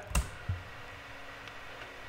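Two faint computer-keyboard clicks, a sharp one just after the start and a softer one about half a second in, then a low steady room hum.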